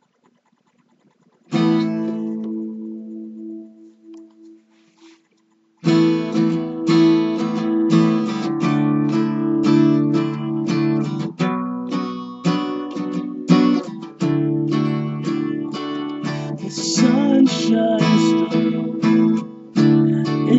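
Acoustic guitar: a single chord strummed about a second and a half in and left to ring and fade, then steady rhythmic strumming from about six seconds in.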